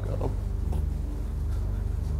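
A low, steady drone of the music score, a sustained deep tone that holds level throughout.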